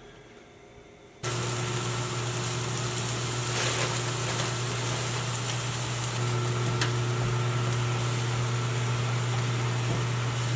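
A kitchen appliance's electric motor starts about a second in and then runs steadily, a loud low hum with a hiss over it.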